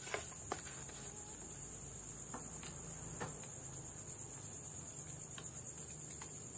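A steady high-pitched insect chirring runs throughout, with a few sharp, scattered pops from a burning wood fire.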